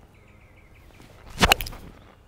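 A three-iron striking a golf ball in a full swing: one sharp, loud impact about one and a half seconds in.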